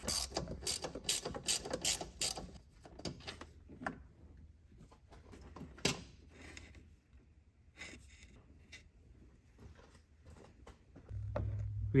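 Ratchet wrench clicking as T30 Torx screws holding a plastic coolant line are backed out: quick runs of clicks over the first two seconds or so, then a few scattered clicks and light knocks.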